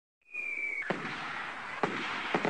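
Fireworks sound effect: a rocket's whistle falling slightly in pitch, then two bangs about a second apart with crackling in between.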